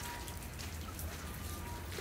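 Light rain or meltwater dripping and pattering on surfaces, an even wash of noise with scattered small ticks.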